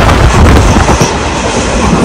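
Indian Railways local passenger train running at speed, heard from an open window: a loud, steady rush of wheel and rail noise mixed with wind on the microphone.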